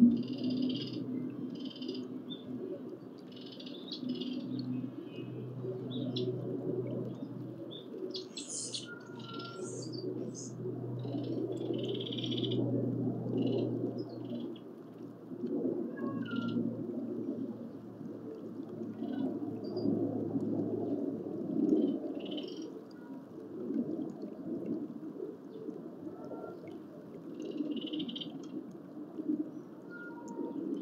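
Wild birds chirping in short, scattered calls, over a low background hum that fades out about two-thirds of the way through.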